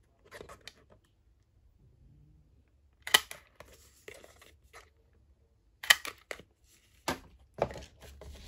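A hand-held metal hole punch snapping through a strip of patterned paper twice, about three seconds apart, each sharp click followed by paper rustling. A smaller click and paper handling follow near the end.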